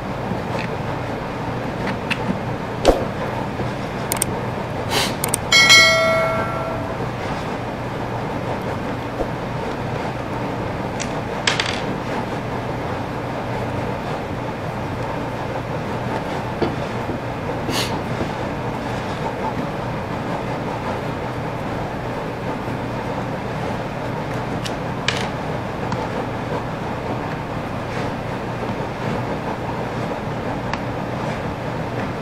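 Hand tools clicking and tapping against the plastic housing of a DeWalt angle grinder as its screws are worked, a few sharp clicks spread out, over a steady room hum. A short metallic ring sounds about six seconds in and is the loudest event.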